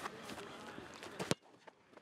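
Faint distant voices, then a single sharp kick of a football about a second and a quarter in, after which the sound drops almost to silence.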